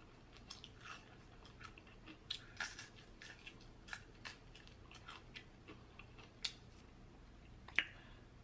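Faint chewing of crispy fried chicken wings, heard as irregular small crunches and crackles through the mouthful.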